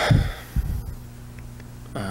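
Two low thumps about half a second apart, over a steady electrical hum.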